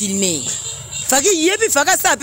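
Voices in conversation, with a pause of about half a second near the middle, over a steady high-pitched whine.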